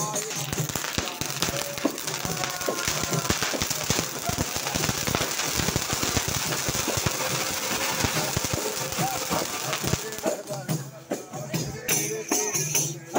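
Two ground fountain fireworks spraying, a dense steady hiss and crackle. About ten seconds in it gives way to frame drums beaten amid voices.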